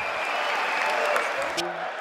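A large audience applauding, a dense, even clatter of many hands, which cuts off about a second and a half in as a man's voice begins.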